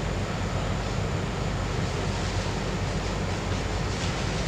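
Steady hiss with a low hum underneath, the background noise of an old lecture recording, with no distinct events.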